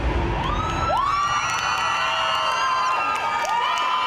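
Audience cheering and screaming as the dance music stops, with many long, shrill high-pitched screams that swoop up, hold and fall away, overlapping one another over the crowd noise.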